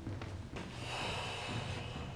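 A person's long breathy exhale, a hiss of breath lasting about a second that begins about half a second in.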